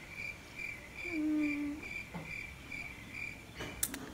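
Cricket chirping in a steady pulse, about three chirps a second, with a person's short hum about a second in and a brief click near the end.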